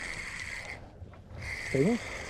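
A steady, high mechanical whine that cuts out for about half a second near the middle and then resumes, with a short exclamation near the end.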